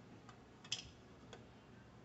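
Near silence with three faint light clicks, the clearest a little under a second in: small kitchen items such as a plastic measuring spoon and an extract bottle being handled while extract is poured.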